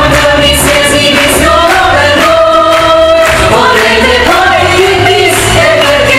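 A group of voices singing a stage-musical number together over loud accompaniment with a pulsing bass beat.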